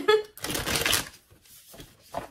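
A woman's short breathy vocal sound about half a second in.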